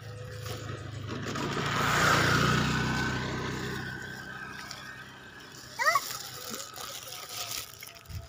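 A vehicle passing along the road: its engine hum and tyre noise swell to a peak about two seconds in, then fade away over the next few seconds.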